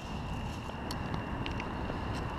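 Low rumble of wind on the microphone, with a faint steady high whine and a few light clicks.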